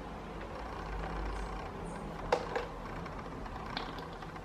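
Hands working a fan's plastic control-panel housing and speed knob into place: a few light plastic clicks and knocks, the sharpest a little over two seconds in, over a steady low background rumble.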